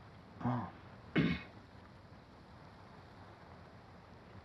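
A man clears his throat twice: a short low voiced one about half a second in, then a sharper, harsher one just after a second.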